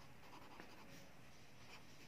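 Faint scratching of a pen writing on a paper workbook page.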